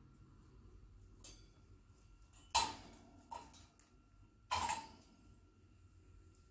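An African grey parrot playing in its metal cage makes a few sharp knocks and rattles. The loudest come about two and a half and four and a half seconds in, each dying away quickly.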